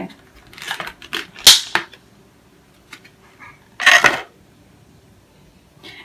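Hard clear plastic case of a jelly ball cleanser being handled and opened: a run of clicks and rattles with a sharp snap about a second and a half in, then another short clatter near four seconds.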